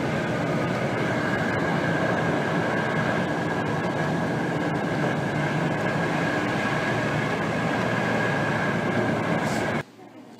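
A moving bus heard from inside the cabin: steady rumbling engine and road noise with a steady high whine. It cuts off suddenly near the end.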